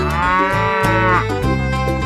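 A cow mooing once, a single call that rises and then falls in pitch, over background music with a steady beat.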